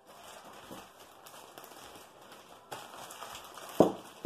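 Clear plastic bag crinkling and rustling as it is handled, with one sharp thump near the end that is the loudest sound.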